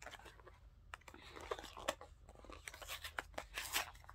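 A small paperboard box of plastic bandages being pulled and torn open by hand: scratchy tearing and crackling of cardboard with sharp clicks, in two busier stretches, the louder one near the end.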